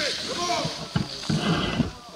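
People's voices calling out in drawn-out cries that rise and fall in pitch, followed by a few knocks and low rumbles in the second second.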